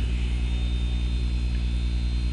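Steady low hum with a faint hiss underneath, no speech.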